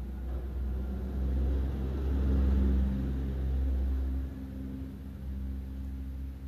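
Low rumble of a passing vehicle, swelling to its loudest about two and a half seconds in and fading away.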